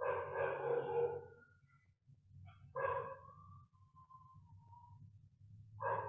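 Animal calls: three short calls, one at the start, one about three seconds in and one near the end, with a fainter thin call between them, over a steady low hum.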